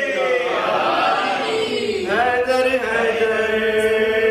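A man's solo voice chanting a melodic devotional recitation, unaccompanied, on long drawn-out notes with sliding ornaments: a descending phrase, a brief breath about two seconds in, then a new phrase settling on a long steady note.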